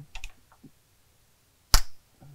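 Metal tool clicks from a Torx screwdriver working the sump filter screw on a 68RFE transmission valve body: a couple of light clicks, then one sharp, loud click near the end.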